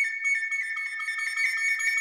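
Solo recorder holding a rapid trill on a high note, flickering quickly between two close pitches.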